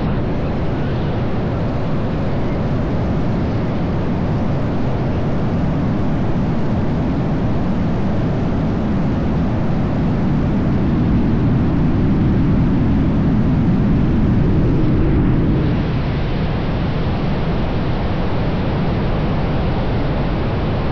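Rushing airflow on the 360 camera's microphones during wingsuit freefall: loud, steady wind noise. It builds a little, then eases and dulls suddenly about fifteen seconds in.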